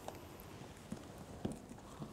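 A few soft knocks and handling sounds as a tie is pulled and wrapped around an endotracheal tube to fix it in a training manikin's mouth. The clearest knocks come about a second in and again about half a second later.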